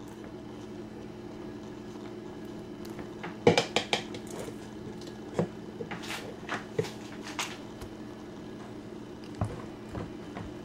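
A metal spoon clinking and scraping against a metal baking pan while spreading mayonnaise on bread, a run of short knocks from about three and a half to seven and a half seconds in and one more near the end, over a steady low hum.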